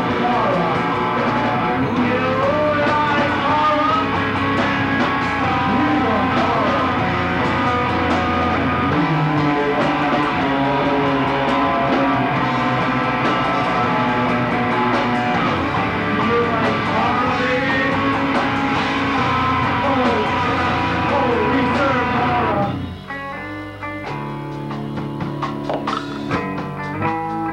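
Live punk-metal rock band playing loud, with electric guitars and a drum kit. About 23 seconds in, the full band drops out and a quieter, sparser guitar part carries on.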